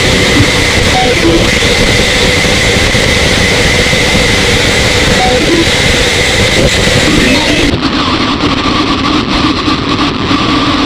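Loud, dense, unbroken wall of noise with a few steady held tones under it. About three-quarters of the way through, the highest frequencies cut out suddenly and the sound thins slightly.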